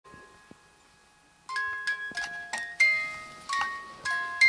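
A baby's crib mobile playing a lullaby tune in bell-like chiming notes, one note at a time with short ringing decays, starting about a second and a half in.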